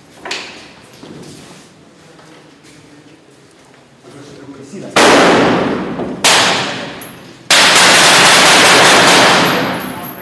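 Rifle fire at close range inside a room. A loud shot about halfway through rings on for about a second, a second shot follows a second later, then a sustained burst of about two seconds overloads the microphone.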